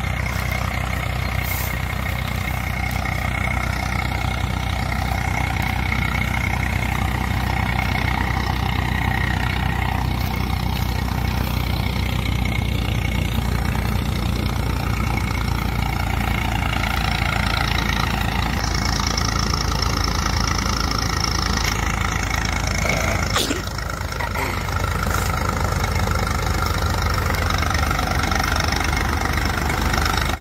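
Tractor diesel engine running steadily under load, driving a threshing machine, with the thresher's steady hum. A single sharp click comes about three-quarters of the way through, followed by a brief dip in level.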